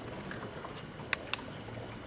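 Hydrogen-oxygen gas from an HHO electrolysis cell bubbling through an air stone in a glass measuring cup of water: a steady fizzing with small pops. Two sharp clicks, a quarter second apart, come just past the middle.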